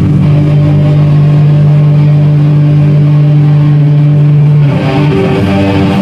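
Stoner metal band playing loud: electric guitars and bass hold one long low chord, ringing out steadily, then about four and a half seconds in the band moves into a busier riff.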